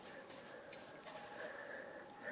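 Quiet room tone with a faint steady hum and no distinct sound event.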